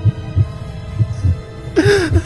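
Heartbeat sound effect: low double thumps (lub-dub), about one beat a second, two beats in all, over a faint sustained music drone.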